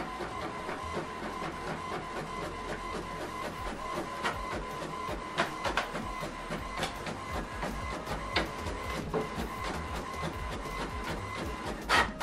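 HP Envy 6020e inkjet printer printing the second side of a double-sided page. A steady whine runs under many small clicks and ticks from the mechanism. The whine stops near the end, when the finished page is out in the tray.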